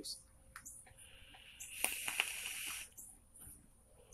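A hit on a dripper vape (RDA): a breathy hiss of airflow and vapour lasting about two seconds, starting about a second in, with a couple of faint pops in the middle.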